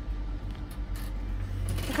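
Steady low hum inside a passenger lift car, with a couple of faint clicks about a second in.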